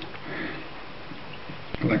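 A man sniffing through his nose, a sign of the head cold he has, followed shortly before the end by a single light click.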